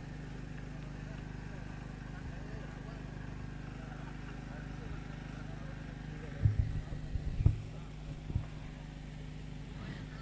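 Faint outdoor background: a steady low hum with distant voices, and a few low thumps about six to eight and a half seconds in.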